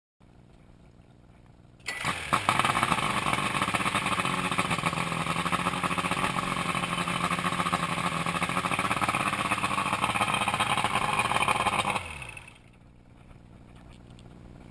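1989 Evinrude 120 HP V4 loop-charged two-stroke outboard starting up about two seconds in and running steadily for about ten seconds, then shut off, its note falling away as it stops. This is a test run on a VRO fuel pump just fitted with a new diaphragm.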